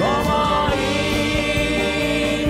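Live band music with a string section, wind instruments and a backing choir; the choir sings long held notes over the band.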